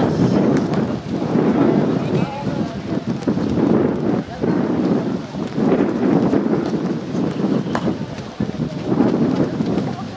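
Kabaddi spectators shouting and cheering during a raid: a loud, rumbling clamour of many voices that swells and dips every second or two.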